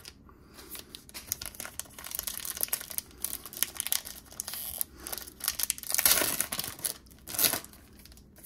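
Foil wrapper of a baseball card pack being torn open by hand and crinkled as it is peeled back off the cards. The crackling is loudest in two rips, about six and seven and a half seconds in.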